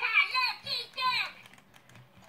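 A Furby Connect toy singing in its high-pitched electronic voice, four short gliding syllables that stop about a second and a half in. Light mechanical clicking from its moving ears and body runs through it.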